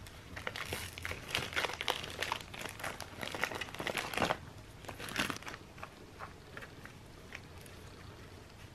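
Clear plastic packaging crinkling as gloved hands unwrap new skateboard wheels, dense crackling for about the first four seconds, then fewer scattered clicks and rustles.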